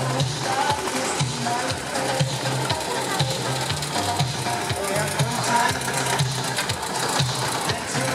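Small vintage Deutz tractor's diesel engine chugging in a quick, even beat as it drives up close, with music and voices in the background.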